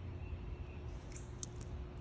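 Faint background with a steady low rumble and two brief, faint high clicks about one and a half seconds in.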